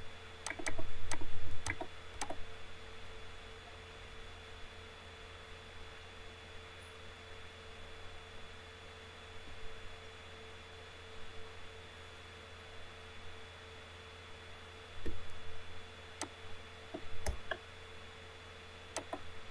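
Computer mouse clicks and a few keystrokes: a cluster of sharp clicks about a second or two in and again near the end, over a steady electrical hum. A brief louder knock and rustle comes about a second in.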